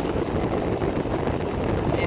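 Steady road and engine noise inside a moving car, with wind rumbling on the microphone.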